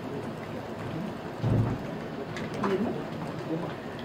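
Steady hiss of hall room tone picked up through the microphones, with a soft low thump about one and a half seconds in and a few faint, brief vocal sounds near the middle.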